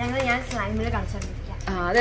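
A person speaking, with no other clear sound standing out.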